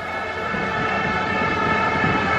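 Stadium crowd with a steady drone of many blown horns sounding held notes together, swelling slightly over the two seconds.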